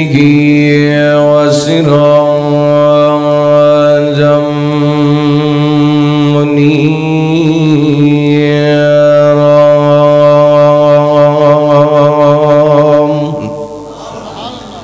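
A man's voice holding one long chanted note in melodic Arabic recitation, with small turns in pitch about a second and a half and seven seconds in. The note fades out near the end.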